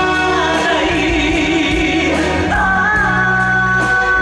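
A man singing into a handheld microphone over a live band's accompaniment, amplified through the stage sound system; a long held note comes in about two and a half seconds in.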